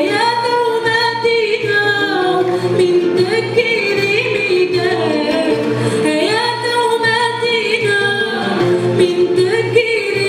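A woman singing Riffian Amazigh izran live, in long held notes that bend and ornament. Acoustic guitars accompany her.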